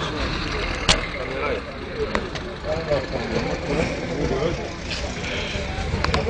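A vehicle engine running close by, a steady low rumble with people talking over it; a sharp click about a second in and another about two seconds in.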